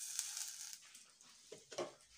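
Curry leaves, dried red chillies, shallots and garlic sizzling faintly in a hot pan, with a crackle that sets in suddenly and fades over about a second, then a couple of short soft strokes near the end.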